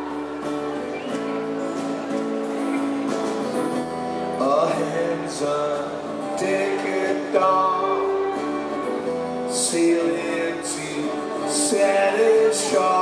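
A live rock band playing a slow instrumental passage, with electric guitar and keyboard over bass. Sharp high accents come in near the end.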